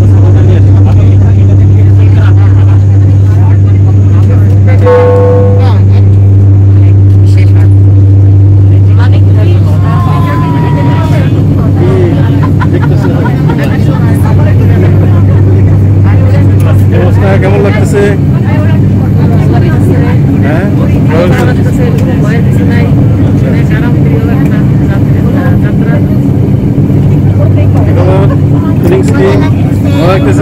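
Turboprop airliner's propeller engines droning steadily in the cabin: a loud, even, deep hum with a strong low tone. A brief ringing tone sounds about five seconds in, and from about ten seconds on voices are heard over the drone.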